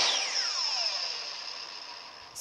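Power drill motor spinning down: a falling whine that fades over about a second and a half, over a steady high hiss.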